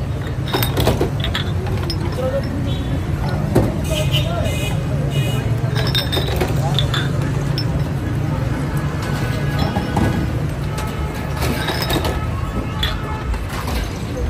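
Glass soda bottles clinking against one another as soda is poured from them, a string of sharp clinks, some with a brief high ring, over a steady low hum and voices.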